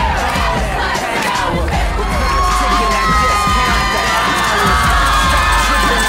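A crowd of teenagers cheering and shouting, many voices overlapping, with a few held yells in the middle. A music track with a steady bass runs underneath.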